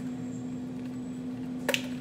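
Air fryer running with a steady low hum. A sharp double click near the end.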